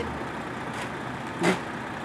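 Steady outdoor street and vehicle noise with no words over it. About one and a half seconds in, a brief voice sound breaks in.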